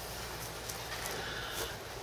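A few faint, scattered knocks of a calf's hooves shifting inside its plastic calf hutch as it draws back, over a steady outdoor background.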